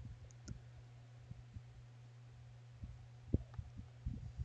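Faint scattered clicks and taps from working a computer drawing setup, over a steady low hum.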